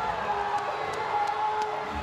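Arena crowd cheering and shouting a goal, a dense steady roar of many voices.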